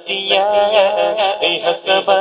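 Male voice singing a naat, an Islamic devotional praise song, in a wavering melodic line.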